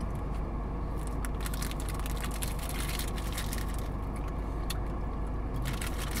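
Idling car engine and air-conditioning fan, a steady hum and hiss heard inside the cabin, with scattered crinkly clicks from paper wrappers being handled.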